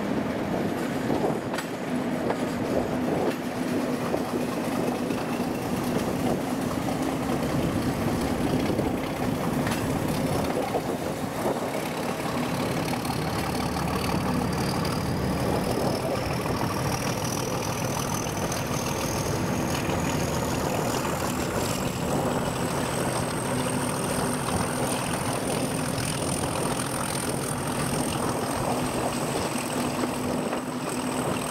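British Rail Class 31 diesel locomotive 31452 running with a train, heard from the open window of the carriage behind. Its English Electric V12 engine gives a steady drone over continuous wheel-on-rail noise. A thin high whine climbs slowly over about twenty seconds, then levels off near the end.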